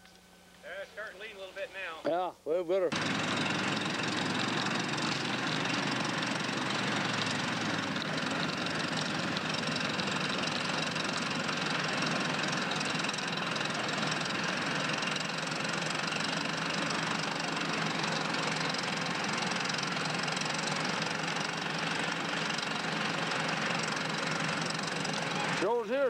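Steam donkey yarding engine working its main lines: a loud, steady rush of steam and machinery that starts suddenly about three seconds in and cuts off suddenly just before the end.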